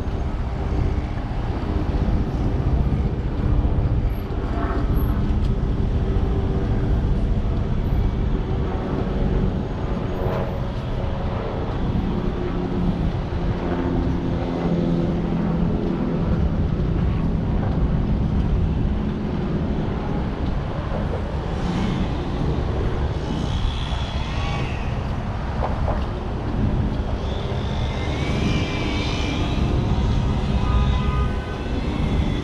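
Steady low rumble of congested road traffic: a line of cars idling and creeping along a viaduct. Brief higher-pitched tones come through near the end.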